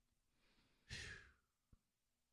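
A single audible breath about a second in, with a small mouth click just after; otherwise near silence.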